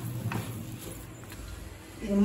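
Flat spatula stirring thick, stiffening rava kesari in a black metal kadai: soft scraping and squelching of the dense mixture, with a few light knocks of the spatula against the pan.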